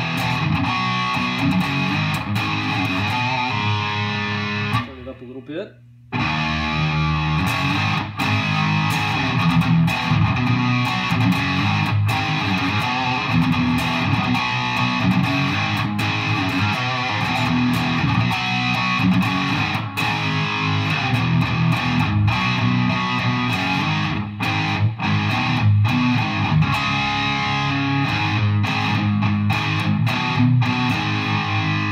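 Electric guitar with PAF-style humbuckers, on the bridge pickup, played through a Digitech RP-80 multi-effects pedal on its 'Stack' preset, a stacked-amp model with plenty of gain, and heard through a Peavey combo amp. The distorted playing breaks off for about a second around five seconds in, then carries on.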